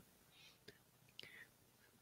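Near silence: room tone in a pause between spoken sentences, with two faint clicks, one a little under a second in and one just past a second.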